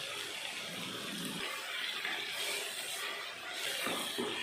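Steady sizzle of chicken pieces cooking in hot oil in a pan.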